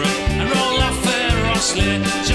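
Folk band playing an instrumental passage: banjo picking over drums, with a steady, regular beat.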